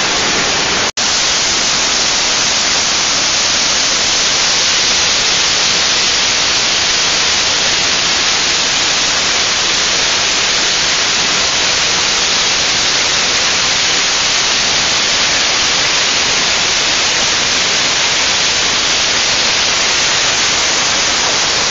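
Mountain stream rushing and cascading over limestone boulders in a gorge, a steady loud roar of white water close to the microphone, broken by a very brief cut-out about a second in.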